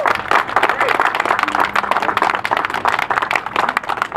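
A small group of people applauding, clapping hands.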